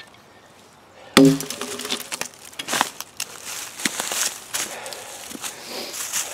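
A sudden heavy thump about a second in, then a run of knocks, clicks and rustling in dry pine chips and leaf litter.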